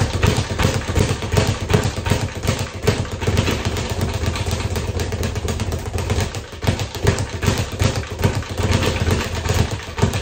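A speed bag being punched continuously, the bag rebounding off its platform in a fast, unbroken rhythm of thuds, with a brief falter about six and a half seconds in.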